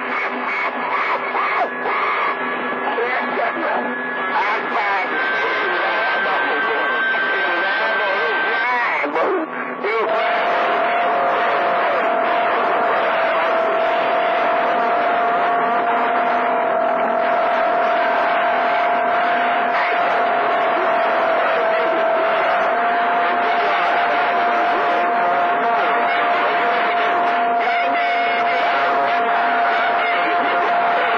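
CB radio on channel 28 receiving long-distance skip: several distant stations talking over one another, garbled and unintelligible, with steady whistles from clashing carriers. From about ten seconds in, a loud steady whistle sits over the jumbled voices and holds to the end.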